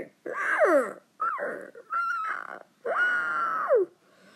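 A person's voice making creature calls for the toys: four squawk-like cries, each falling in pitch, the last one long and held before it drops away near the end.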